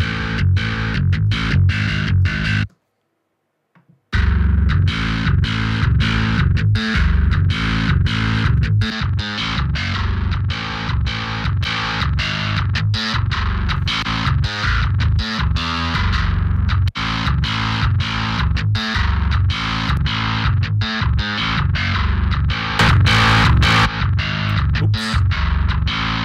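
Heavily distorted djent bass riff from a software bass instrument played back through its plugin chain, in a choppy stop-start rhythm with a deep low end. It cuts out for about a second and a half near the start, then plays on as the plugins are switched on one by one.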